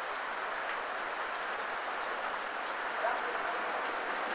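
Heavy rain falling steadily on a street and surrounding surfaces, an even hiss that keeps the same level throughout.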